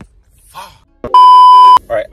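A single loud, flat electronic bleep of about two-thirds of a second, starting and stopping abruptly, typical of a censor bleep dubbed over the audio in editing.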